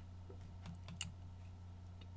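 A few faint clicks, bunched together about a second in, over a steady low electrical hum.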